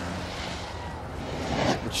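Snowboard edge scraping across the halfpipe's packed snow, a hiss that swells and fades, then builds again near the end.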